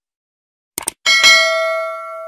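A quick double click, then a bell sound effect that rings and fades over about a second and a half: the click-and-ding of a subscribe-button and notification-bell animation.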